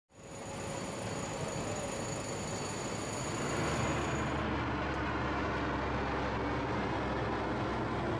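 Steady low drone and rush of a C-130 Hercules's four turboprop engines passing overhead, fading in at the start. The highest hiss drops away about halfway through.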